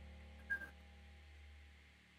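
Near silence: a faint steady low electrical hum, with one short faint blip about half a second in.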